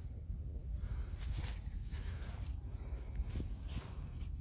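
Leaves and branches of jujube trees swishing and rustling in several passes as someone moves through them, over a steady low rumble on the microphone.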